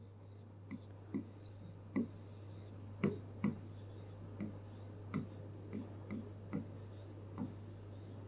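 A stylus tapping and sliding on an interactive touchscreen board as a formula is written by hand. It makes a series of faint, irregular taps, a little under two a second, over a steady low hum.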